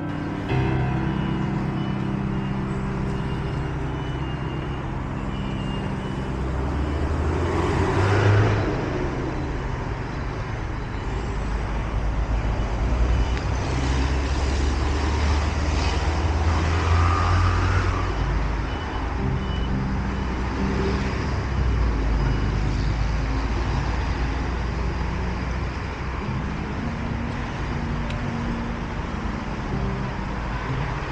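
City road traffic: a steady rumble of cars and buses running and passing, with one vehicle swelling loudest about eight seconds in.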